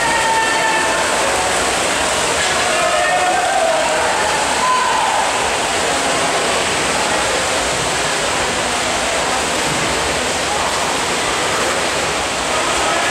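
Swimmers splashing through a race in an indoor pool hall, a steady echoing wash of water noise, with shouting voices of cheering teammates over it in the first few seconds.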